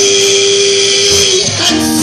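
Live gospel music: a singer holds one long note for about a second and a half over band accompaniment with guitar, then the melody moves on near the end.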